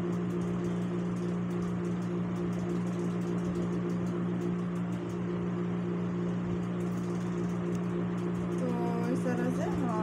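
Steady low electric motor hum with several fixed tones; a woman starts speaking near the end.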